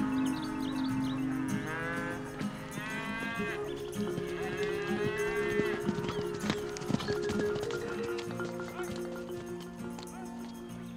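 Cattle mooing several times in the first half, over background music of long held notes.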